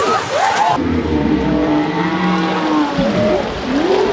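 A low, drawn-out, moo-like vocal sound, most likely a human shout slowed down with a slow-motion replay. It holds long, low pitches that bend, then rise near the end. The sound changes abruptly about three-quarters of a second in, and the high end drops away.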